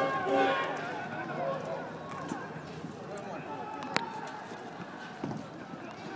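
Background chatter of distant, overlapping voices. Pulsing music ends about half a second in, and a single sharp smack comes about four seconds in.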